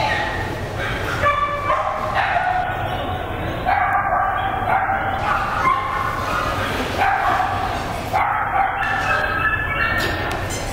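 A dog yipping and whining again and again in high-pitched cries, over the murmur of people talking.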